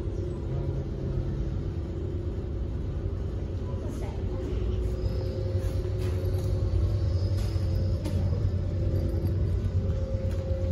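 Steady low rumble with a constant hum, growing a little louder in the second half, with a few faint clicks.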